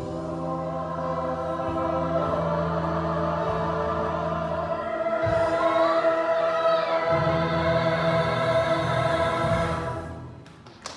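Choir and cast singing long held notes together over musical accompaniment, a big closing chord that swells about halfway through and is held until it fades near the end.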